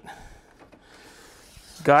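Faint rubbing and handling noise of hands working a flip stop on an aluminium table fence, soft and steady, with the clearest stretch in the second half.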